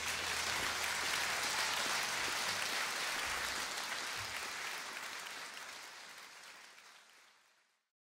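Audience applauding at the end of a song, the clapping dying away and then faded out to silence shortly before the end.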